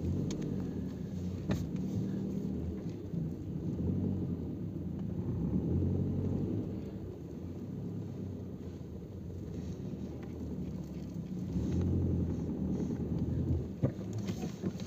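Low rumble of a vehicle engine running at slow speed, its loudness swelling and easing a little as it drives.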